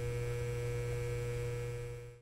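Steady low electrical hum with a faint higher steady tone above it, fading down at the very end.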